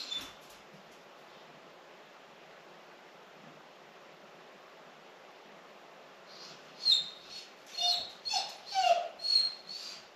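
A dog left alone in the house whining: after a quiet stretch, a quick string of short, high-pitched whines with sliding pitch begins about seven seconds in and lasts a couple of seconds. The whining is a sign of the distress of being left alone.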